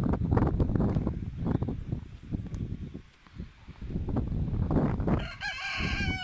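Low rumbling noise on the microphone with scattered knocks, then about five seconds in a drawn-out animal call with a wavering pitch, of the crowing kind.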